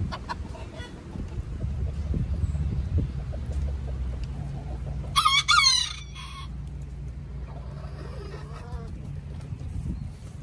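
Chickens calling: one loud, high call lasting under a second about five seconds in, then softer, lower calls near the end, over a steady low hum.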